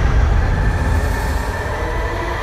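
Steady low rumble of a heavy truck driving along a road, heard from a camera mounted on its crane bed, with a faint steady tone over it.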